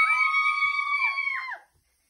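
Two girls squealing with excitement, high-pitched and held, one voice slightly lower and bending down at the end. Both break off abruptly about a second and a half in.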